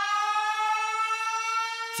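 A sustained siren-like wail that rises slowly and steadily in pitch.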